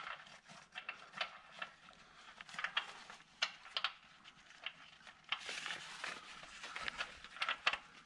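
Scattered light clicks and taps of gloved hands working at an oil pan's drain plug while refitting it after draining, with a stretch of paper-towel rustling a little past the middle.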